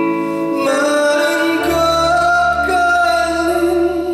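Live male lead vocal singing a slow Korean ballad into a handheld microphone over keyboard and band accompaniment, with long held notes. A deep bass note comes in about a second and a half in.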